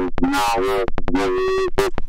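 Ableton Live's Roar distortion device in a feedback loop, putting out warbling, gliding pitched tones that break off and restart like garbled speech in a strange language. A run of sharp clicks comes about a second in.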